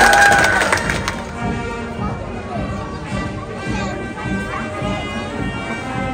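Clapping during the first second, then bagpipes playing: several steady drones held under a melody.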